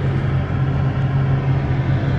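Chevrolet Avalanche's 8.1-litre (502 cu in) V8 idling, heard from inside the cab as a steady low hum.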